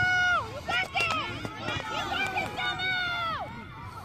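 Several people shouting at a soccer match, voices overlapping, with a long drawn-out shout at the start and another near the end.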